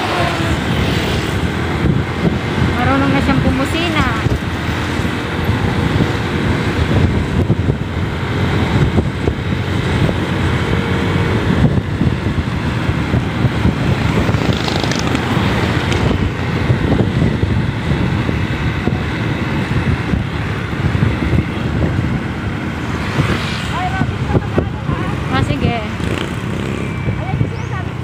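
Steady road noise from a moving motorcycle: wind rushing over the microphone together with the engine and tyres, with other traffic passing.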